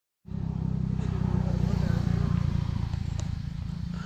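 Wind buffeting the microphone: a loud, irregular low rumble, easing slightly near the end, with faint voices underneath.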